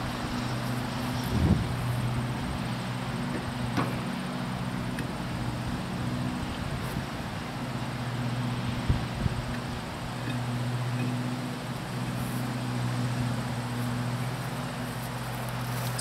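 A trailer wheel and tyre being worked onto its hub, with a few scattered knocks and clunks, over a steady low hum.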